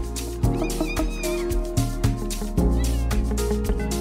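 Amapiano dance music playing in a DJ mix: deep log-drum bass notes under a steady run of percussion hits. Short gliding high-pitched cries sit over the beat about half a second in and again around three seconds in.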